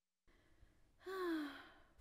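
A toddler's voice makes a short, breathy, thinking 'hmm' that slides down in pitch, about a second in after a silent pause: the sound of a puzzled child trying to think of an answer.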